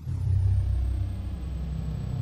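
A deep, steady rumble from an outro soundtrack that starts suddenly out of silence, with a faint high whine above it.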